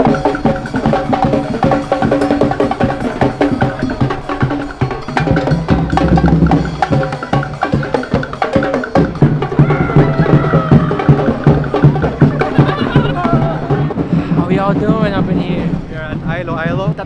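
Drum-led percussion music with a dense, continuous beat of bass drum and sharp knocking strokes over sustained pitched tones. A voice comes in near the end.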